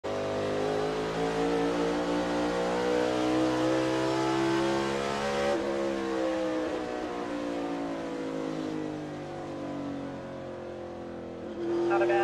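Chevrolet NASCAR Cup car's pushrod V8 at racing pace, heard from inside the cockpit. Its pitch falls and rises as it goes through the corners, with a sudden change about halfway. It drops to a quieter, lower note for a few seconds near the end, then picks up again.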